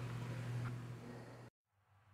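Faint steady low hum with light hiss, the room tone of the recording, which cuts off abruptly about one and a half seconds in, leaving dead silence.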